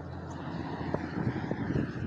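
Low, steady outdoor background rumble that grows slightly louder toward the end, with a couple of faint ticks.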